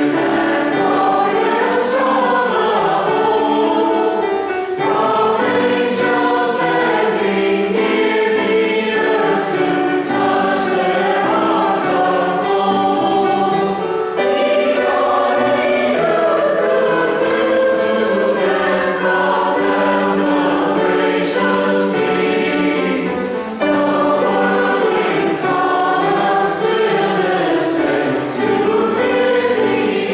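Church choir of mixed men's and women's voices singing in parts, sustained sung lines running on without a break.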